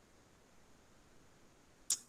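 Near silence: faint room tone, broken near the end by one brief, sharp hiss.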